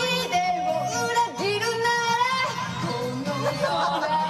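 A woman singing karaoke into a microphone over a loud backing track, holding long wavering notes.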